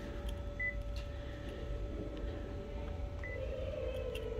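Two short, high key-press beeps from a copier's touchscreen control panel as buttons are tapped, about half a second in and again near the end, over a steady machine hum.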